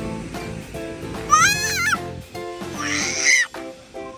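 A baby's high-pitched squeal, wavering in pitch, about a second and a half in, and a shorter squeal near the end, over background music with a steady beat.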